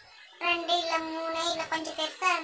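A child singing: a long held note starting about half a second in, followed by shorter notes.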